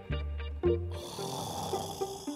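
A few plucked-string music notes over a deep bass, then about a second in a person snoring with one long noisy breath.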